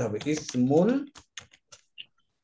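Computer keyboard typing: about four separate keystrokes in the second half, after a brief stretch of speech.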